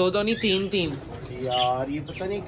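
A pigeon cooing, a short low coo about a second and a half in, after a few spoken words.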